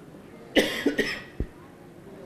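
A person coughing twice, about half a second and a second in, followed by a short low thump.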